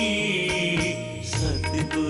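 Shabad kirtan: harmoniums sounding held, reedy chords under a man's devotional singing, with tabla strokes. The tabla strokes come quicker from a little past halfway.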